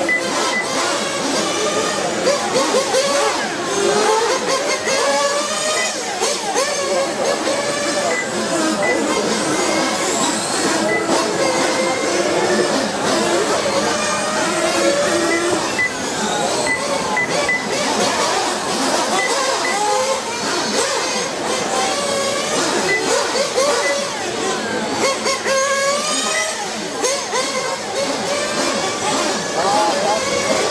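Several R/C racing motorcycles running on the track together, their motor notes overlapping and each rising and falling in pitch as the bikes speed up and slow for the corners. Short high beeps sound now and then.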